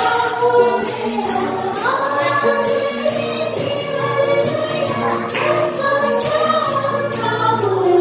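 Women's voices singing a Nepali Christian hymn together, amplified through a PA system, over hand percussion keeping a steady beat.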